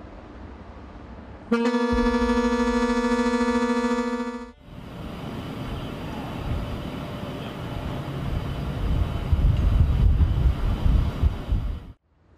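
A ship's horn gives one steady blast of about three seconds. It is followed by a rumbling noise that grows louder toward the end.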